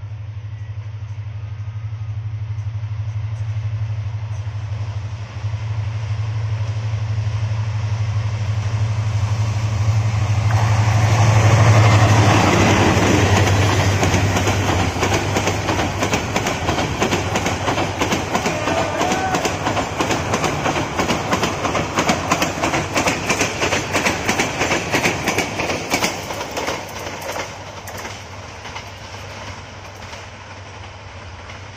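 A Bangladesh Railway Class 2900 EMD diesel locomotive runs through at speed with an intercity train. The engine's deep drone builds and peaks as the locomotive passes about twelve seconds in. Then the coach wheels clatter rapidly over the rail joints, fading near the end.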